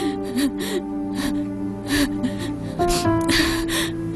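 A woman crying, with repeated sobbing breaths, over sustained background music.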